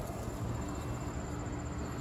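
Outdoor ambience: a steady low rumble with a faint hum, and a thin high insect trill throughout.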